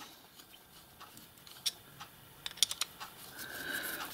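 Faint, scattered light clicks and ticks of small metal parts being handled as a plug is unscrewed by hand from a miniature steam locomotive's whistle push valve: a single click a little over a second and a half in, a quick few more a second later, and a soft hiss near the end.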